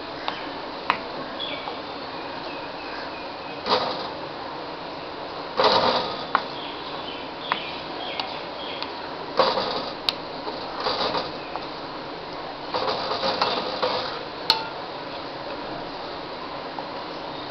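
A spoon stirring and scraping a papaya, milk and sugar halva mixture cooking in a kadai. It comes in several short bursts with a few sharp clicks, over a steady hiss.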